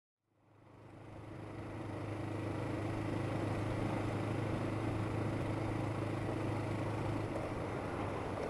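Motorcycle engine running at a steady cruise, with wind and road noise, heard from a helmet-mounted camera; it fades in from silence over the first couple of seconds, and the engine note eases off slightly near the end.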